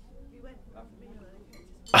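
Faint restaurant background ambience: distant diners murmuring, with cutlery and dishes clinking.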